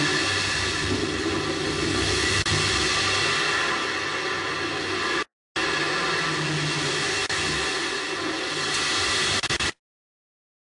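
Steady rushing hiss with a low hum under it on a space shuttle onboard camera's audio feed. It drops out for a moment about five seconds in and cuts off just before the end.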